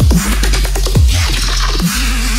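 Heavy dubstep track in a DJ mix, processed as 8D audio: kick drums that drop sharply in pitch, about two a second, over a steady deep sub-bass and a dense, gritty upper layer.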